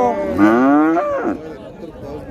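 A young calf moos once: a single call of about a second that rises slightly in pitch and then drops away.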